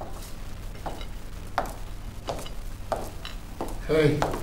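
Footsteps, about one every two-thirds of a second, as a man walks into a room, over a steady low hum.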